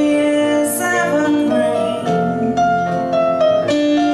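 Live folk song: a woman singing over a picked acoustic guitar.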